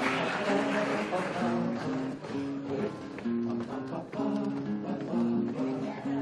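Acoustic guitar playing a plucked melody of short, evenly paced notes.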